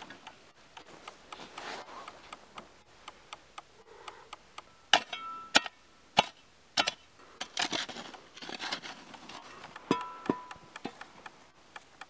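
Metal shovel digging into stony, gravelly ground: the blade scraping through soil and grit, with several sharp strikes on stone about five seconds in and again near ten seconds, some leaving a short metallic ring.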